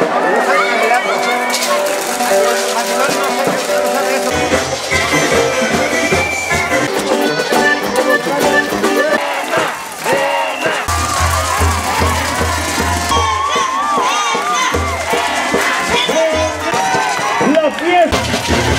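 Upbeat live band music with held melody notes and a pulsing bass line that comes in about four seconds in, drops out briefly and returns, with voices in the mix.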